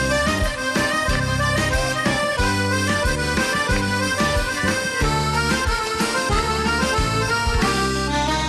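Live band playing an instrumental passage of a Greek popular song, a bass and drum beat under a sustained melody line, with no singing.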